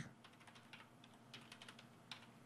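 Faint computer keyboard typing: a quick, uneven run of key clicks.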